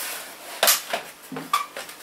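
Hard plastic laptop casings knocking together as a closed laptop is set down on a stack of other laptops: one sharp knock a little before the middle, then a few lighter clicks.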